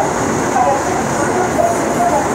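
Seoul Line 2 electric train running at speed, heard from inside the car: a loud, steady running noise of wheels on rail with no break.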